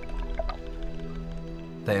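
Soft background music of steady held tones, with a couple of faint drip-like sounds about half a second in; a man's narrating voice begins just before the end.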